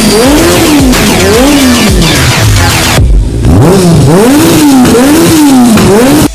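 Car engines revving mixed with fast electronic music, a pitch rising and falling about once a second, with a short break in the music about halfway through.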